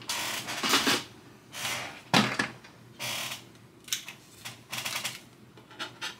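Hard plastic Big Country Toys F-250 toy body being handled and fitted onto a small RC crawler chassis: a run of short scrapes, rattles and clicks, the larger ones in the first half and lighter clicks after.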